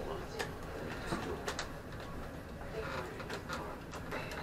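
Marbles clicking and rolling along the wooden tracks of a homemade marble machine as they are carried and released, with scattered sharp clicks throughout over a steady low hum from the machine's drive motor.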